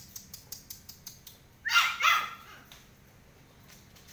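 Belgian Malinois puppy barking, two quick barks about two seconds in, over faint repeated clicks.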